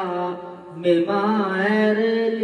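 A Buddhist monk chanting in a drawn-out melodic voice, holding long notes, with a brief pause for breath about halfway through.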